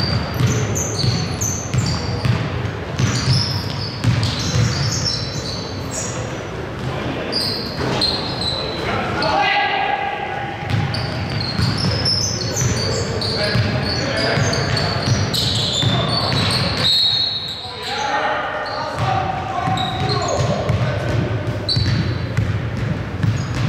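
Pickup basketball game on a hardwood gym floor: the ball bouncing as it is dribbled and sneakers squeaking, with players calling out to each other in a large, echoing hall.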